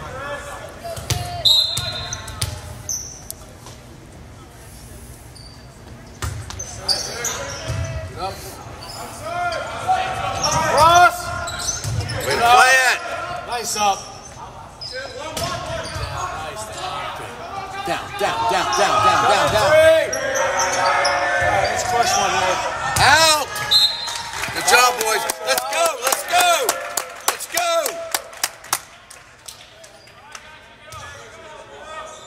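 Volleyball rally in a reverberant school gym: a short referee's whistle about a second in, then the ball being served and struck with repeated sharp smacks while players shout on the court. A second short whistle comes about 23 seconds in as the point ends, followed by more shouting and ball hits.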